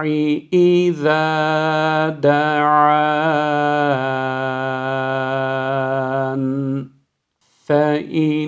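A man reciting the Quranic phrase "da'wata-d-da'i idha da'an" in slow, melodic tajweed chant, stretching the vowels into long held notes across three phrases. The longest phrase ends about seven seconds in.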